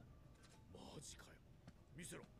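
Faint, quiet speech just above near silence: anime dialogue in Japanese playing low, with a short phrase about the middle.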